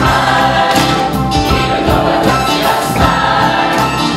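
Large mixed gospel choir singing in full harmony over a live band, with a steady beat.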